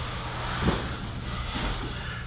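Steady low room hum with faint rustling of fabric as hands press and shift on a clothed back, one soft rustle standing out just under a second in.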